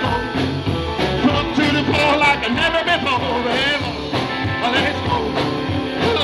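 Live rockabilly band playing an up-tempo number: upright double bass, drums, and acoustic and electric guitars with a steady driving beat.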